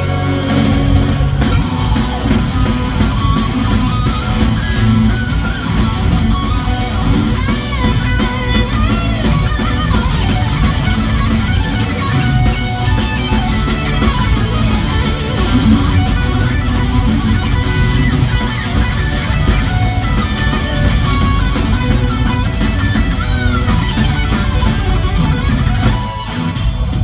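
Folk metal band playing live: distorted electric guitars, bass and a pounding drum kit, with a melody line winding up and down over the top.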